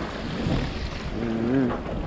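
Seawater washing and splashing against rocks and concrete steps at the shoreline, a steady rushing noise. A voice is heard briefly near the end.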